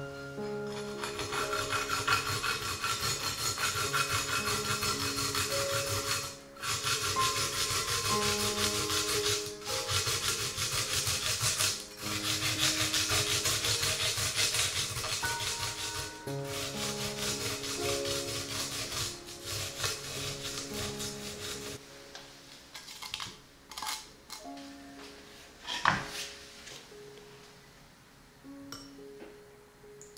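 A garlic clove being grated on a flat stainless-steel grater, a rapid rasping scrape that stops briefly three times. After about 22 seconds it gives way to scattered light taps and one sharp knock a few seconds later. Soft mallet-instrument music plays underneath.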